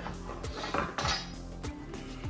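A knife cutting through a rack of smoked bison back ribs on a cutting board: several short cutting strokes in the first second or so, over background music with a steady beat.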